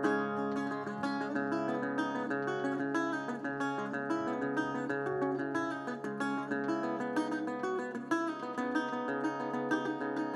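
Metal-bodied resonator guitar played fingerstyle as an instrumental break: a continuous run of plucked notes over sustained low bass notes.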